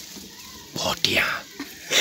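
A person whispering briefly, about a second in, with low background in between.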